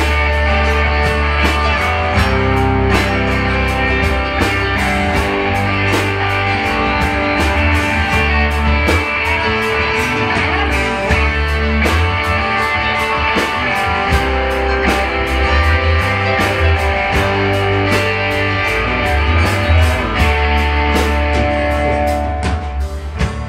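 Live rock band playing an instrumental passage: electric guitars and bass guitar over a steady drum-kit beat.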